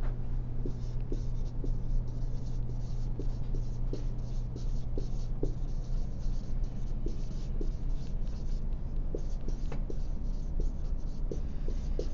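Writing by hand on a classroom board: a run of short, irregular scratchy strokes over a steady low hum.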